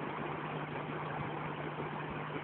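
Water rushing and churning steadily into a canal lock chamber through the gate sluices as the chamber fills, with a steady low hum beneath it from an idling boat engine.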